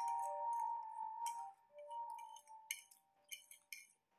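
Cutlery clinking against plates in short, sharp ticks while eating, over background music that fades out about three seconds in.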